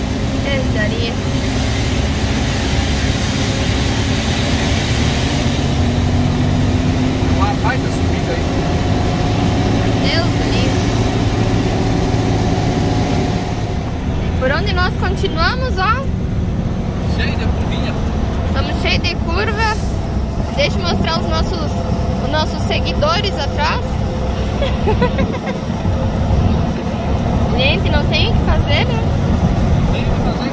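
Scania 113H truck's inline-six diesel engine running steadily under way, heard from inside the cab with road noise; a few indistinct voices come in partway through.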